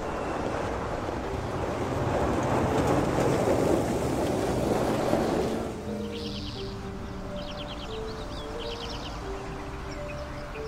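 A car driving along a street with road and wind noise that swells, then cuts off about six seconds in. After the cut come soft, held music notes and a bird chirping in short repeated trills.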